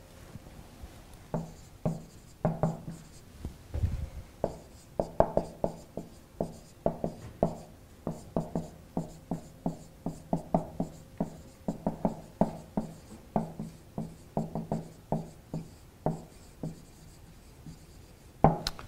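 Marker pen writing on a whiteboard: a long run of short squeaky strokes and taps as a line of text is written out.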